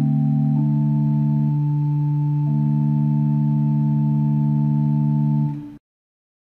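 A sustained organ-like keyboard chord held after the sung Amen that closes the psalm; the upper notes step down shortly after the start, and the chord cuts off abruptly near the end.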